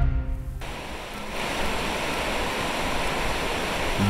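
A music sting fades out, then water rushes steadily: the Fonts Ufanes, Mallorca's intermittent springs, bursting out in a powerful, high flow after heavy rain.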